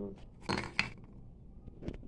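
Round plain biscuits being put into a ceramic bowl: a few light clinks and knocks, about half a second in and again near the end.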